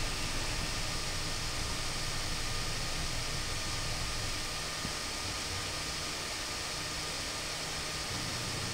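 Steady background hiss with a low hum and a faint steady high tone underneath, and a single faint click right at the start.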